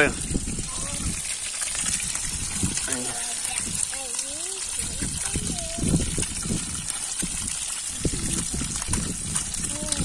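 Creek water running steadily, with faint voices in the background.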